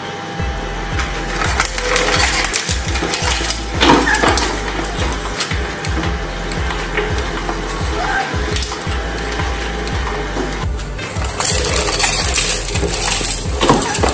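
A twin-shaft shredder's steel cutter discs crushing a sponge and plastic drinking straws, a dense run of crackling snaps over the steady drone of the machine, with background music underneath.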